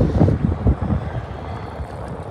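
Wind buffeting the microphone: an irregular, gusty rumble, strongest in the first second and easing off after.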